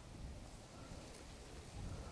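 Faint outdoor background by a lake: a quiet, even hiss with a little low rumble and no distinct events.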